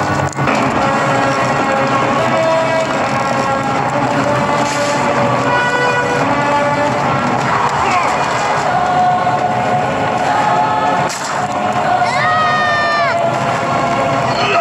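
A film soundtrack: a dramatic orchestral score with choir over the dense rumble of a stampeding wildebeest herd. About twelve seconds in, a short cry rises and falls.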